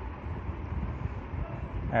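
Steady low rumble with a hiss of background noise, with no clear events in it.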